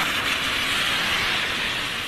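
Strong hurricane wind and rain, making a steady hiss.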